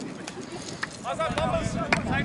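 Indistinct voices of sideline rugby spectators talking and calling out, growing louder about a second in, with a few sharp clicks over the outdoor background noise.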